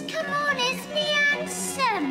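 Orchestral ballet music: strings holding a chord under a wavering melody line, with a sweeping fall in pitch near the end.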